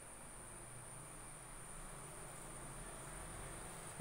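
Faint background noise between speech: a steady high-pitched whine with a low hum beneath it.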